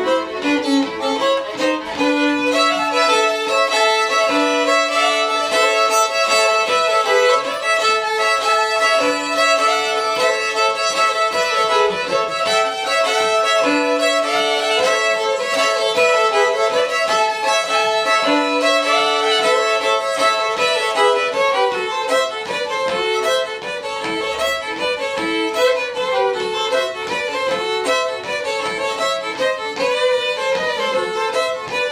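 Two fiddles playing Cajun fiddle music together, a quick bowed melody over long held notes, with a high note sustained for much of the first two-thirds.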